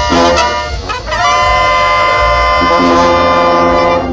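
Mexican brass banda playing live: trombones, trumpets and clarinets over sousaphone bass notes. About a second in the band slides into a long held chord.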